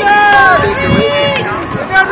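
Voices only: the end of a called-out "nice job", then laughter and more raised talk.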